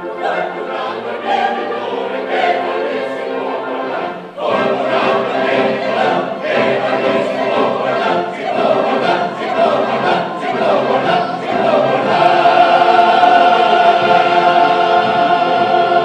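A mixed chorus of men and women sings with instrumental accompaniment and grows fuller after a short break about four seconds in. It closes on a loud final chord held from about twelve seconds in, which cuts off sharply at the end.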